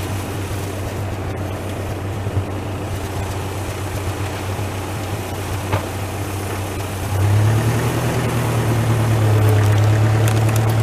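Massey tractor engine running steadily, then louder from about seven seconds in as it takes the load of dragging a heavy chained elm log.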